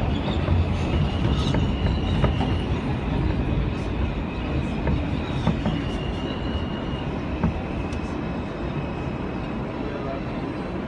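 R160B subway car running along the track, heard from inside the car: a steady rumble with occasional sharp wheel clicks and a faint high whine that comes and goes, easing off slightly towards the end.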